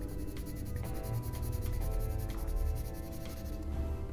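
4B graphite drawing pencil scratching back and forth on paper while shading, over background music with sustained tones.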